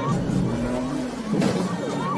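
Police car siren sweeping quickly up and down in pitch, with a moving car underneath; the siren dips in the middle and comes back about one and a half seconds in.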